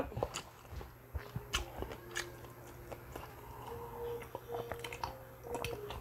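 Close-miked chewing of crispy fried food, with irregular crunches and small mouth clicks.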